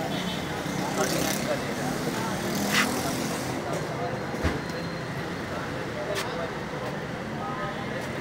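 Busy street ambience: road traffic running steadily, with indistinct voices of people around and a few short sharp clicks or knocks.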